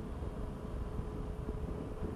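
Steady wind and road rumble on a helmet-mounted microphone while riding a Yamaha Tracer 900 motorcycle at a steady speed, with a faint steady hum underneath.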